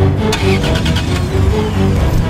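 A Suzuki Swift hatchback's engine starting, with a quick run of ticks early on, then running as the car pulls away. Dramatic background music plays throughout.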